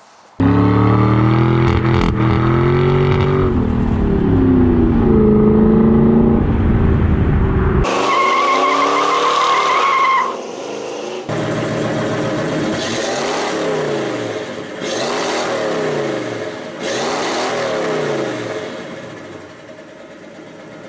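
Car engine revving up and down, with a tire squeal from about eight to ten seconds in, then a run of repeated revs. These are edited car-sound clips that cut in and out abruptly.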